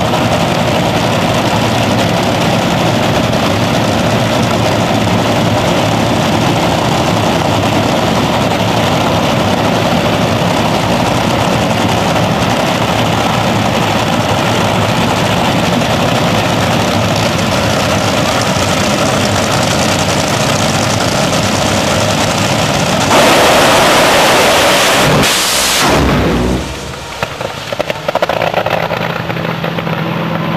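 Top Fuel dragster's supercharged nitromethane V8 idling loudly and steadily on the start line. About 23 seconds in it launches at full throttle, a much louder surge for about three seconds, then the sound drops and turns uneven and spiky as the car struggles with tyre shake.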